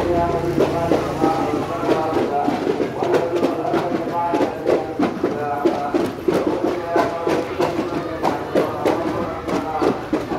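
A crowd of voices singing or chanting together, over a regular beat of sharp drum strokes a little more than one a second.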